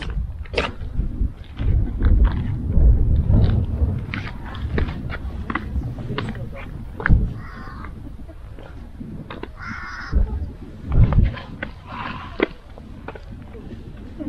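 Wind buffeting the microphone in uneven gusts, with footsteps and scattered light clicks on a stone path.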